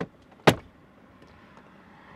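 A single sharp plastic snap about half a second in: a steering-column trim panel being pulled free as its retaining clips let go.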